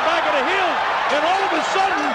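Speech: a voice calling out animatedly, its pitch rising and falling, over steady crowd noise.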